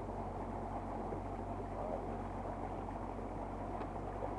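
Small river boat's motor running steadily, with water washing along the hull as the boat moves.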